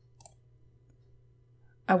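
A couple of quick computer mouse clicks, faint over a low steady hum; a woman starts speaking right at the end.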